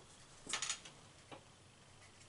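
A few faint, short rustles: paper cut-out stick puppets being handled and moved, the clearest about half a second in and a smaller one just past a second.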